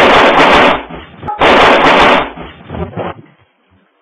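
Two loud bursts of gunfire from an AK-47 rifle in a small room, the first right at the start and the second about a second and a half later, each lasting under a second and overloading the recording.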